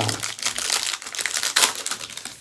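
Foil wrapper of a Topps Series 2 baseball card pack crinkling as it is pulled open by hand, a dense irregular crackle.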